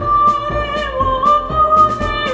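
Solo soprano voice singing a marching song, holding one long high note that dips briefly about halfway, over a recorded march accompaniment with a steady beat.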